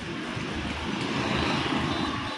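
Road traffic: a motor vehicle passing close by, its noise swelling to a peak about a second and a half in and then fading.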